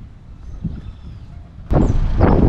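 Outdoor wind rumbling on the microphone. About a second and a half in, a much louder burst of wind buffeting the microphone starts suddenly.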